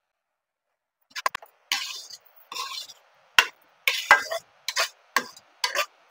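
A metal spoon stirring thick spinach gravy in a metal pan, about eight short scraping strokes with clinks against the pan, starting about a second in.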